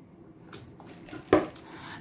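Quiet sipping through a straw from a paper cup, with one short, sharp sound about a second and a third in.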